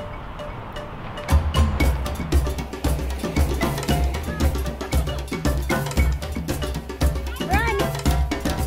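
Background music with a steady percussive beat: bright knocking, cowbell-like strokes over a deep bass pulse, starting about a second in after a moment of quieter background noise.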